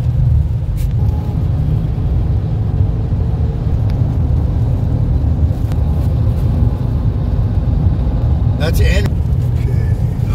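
Steady low rumble of a car driving at road speed, heard from inside the cabin. A brief voice sound comes about nine seconds in.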